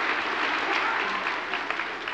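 A large audience applauding, the clapping dying away gradually toward the end.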